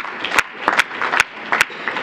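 Scattered sharp clicks, about three a second and irregularly spaced, over low background noise.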